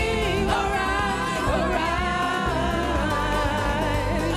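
Gospel praise-and-worship song: voices sing long, held notes over a steady instrumental backing with a strong bass.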